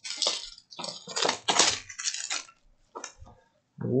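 Plastic shrink-wrap crinkling and tearing as it is stripped off a sealed trading-card box: a run of crackly rustles for about two and a half seconds, then one brief rustle near the end.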